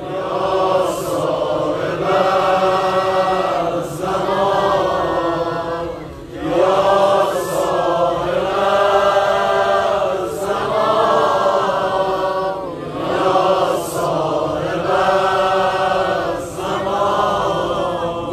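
A male voice chanting a Shia Muharram mourning lament (rowzeh) in long, drawn-out melodic phrases of a few seconds each, with short breaks between them.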